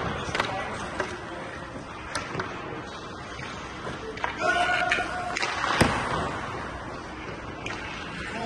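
Hockey goalie's skates scraping and carving on rink ice while moving in the crease. A few sharp knocks of equipment against the ice are heard, the loudest about six seconds in.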